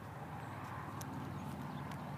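Wind rumbling low on the microphone, with a few faint ticks.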